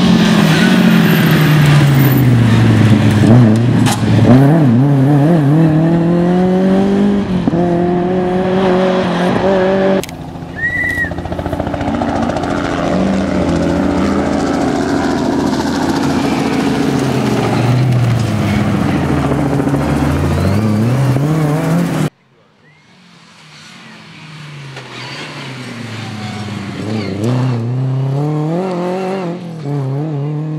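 Lada VFTS rally car's four-cylinder engine revving hard, its pitch climbing and dropping with each gear change and lift as the car slides past. There are two sudden cuts to a new pass; after the second the engine starts faint and grows loud as the car approaches.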